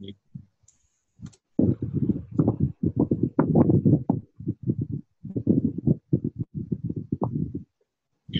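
Rapid clicking and tapping on a computer keyboard, picked up close to the microphone. It comes in two dense runs with a short pause near the middle.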